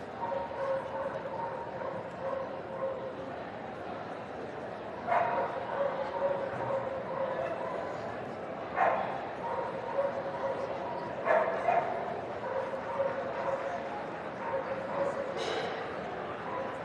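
Dogs barking: several short, sharp barks about five, nine and eleven seconds in, with another near the end. Behind them are the chatter of a crowd and a steady hum.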